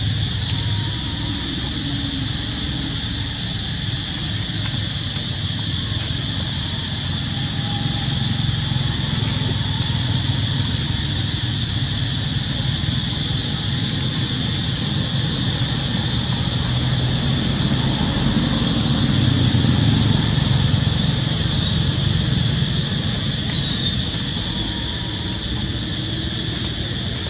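Steady outdoor background noise: a low rumble with a constant high-pitched drone over it, the rumble swelling a little near the end.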